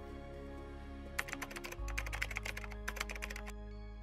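Computer-keyboard typing sound effect: a quick, irregular run of key clicks starting about a second in and stopping suddenly after about two seconds, over soft background music.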